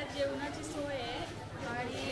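Indistinct voices of people talking, not close to the microphone.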